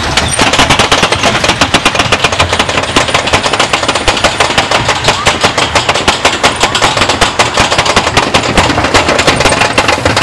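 Roller coaster chain lift: the anti-rollback dogs clacking in a rapid, even rattle as the chain hauls the train up the lift hill.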